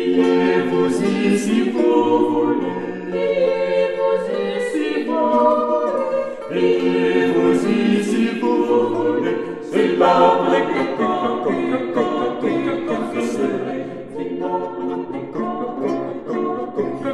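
A small vocal ensemble singing Renaissance polyphony, several voices moving in counterpoint; the piece begins right at the start.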